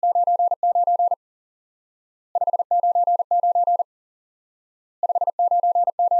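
Morse code at 40 words per minute: a single steady beep tone keyed in short and long elements, sending "599" three times in quick groups about two and a half seconds apart. 599 is the standard amateur-radio signal report.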